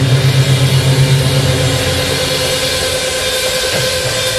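Black metal band playing a dense wall of distorted guitar, bass and drums. A held low note drops out about a second and a half in, leaving a steady, noisy roar.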